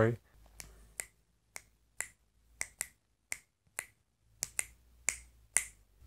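Fingers snapping, about a dozen sharp snaps at roughly two a second in an uneven rhythm, with near silence between them.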